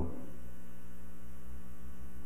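Steady electrical mains hum with a faint hiss in the sound-booth audio feed, holding one even level throughout.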